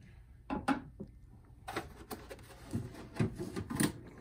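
Display cabinet door and a tennis racket being handled: a couple of light knocks about half a second in, then a run of knocks and rubbing through the last two seconds as the cabinet door is shut.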